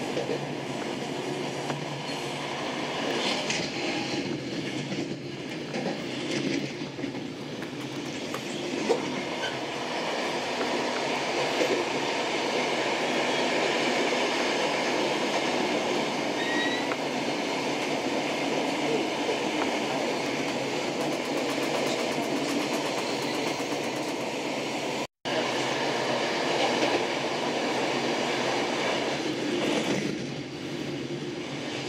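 Running noise of a passenger train heard from inside the carriage: a steady rumble of wheels on rails at speed, with a single sharp click about nine seconds in. The sound cuts out for a split second near the end.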